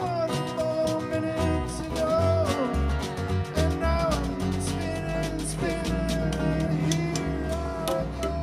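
Live folk-blues band playing an instrumental passage: strummed acoustic guitar, electric bass and hand percussion under a lead of long held notes that bend in pitch, as a blues harmonica plays them.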